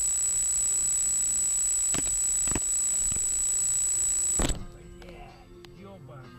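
Dashcam audio with a steady high-pitched whine over hiss and a few sharp clicks, then a loud thump about four and a half seconds in. After the thump the whine stops and the sound drops to faint music.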